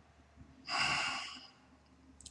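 A man's single audible breath, close to the microphone, lasting under a second, about two-thirds of a second in.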